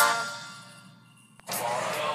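Background guitar music fading out over about a second to near silence, a short click, then at about a second and a half the ambient sound of the next clip cuts in abruptly: a steady noisy background with faint voices.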